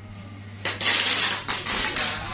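Rustling, scraping handling noise that starts about half a second in and lasts about a second, over a steady low hum.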